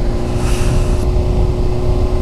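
Honda CBR600RR inline-four engine, fitted with what the rider believes is a Shark aftermarket exhaust, running at a steady, unchanging pitch while the bike is ridden slowly through a curve. Wind rushes over the helmet microphone underneath.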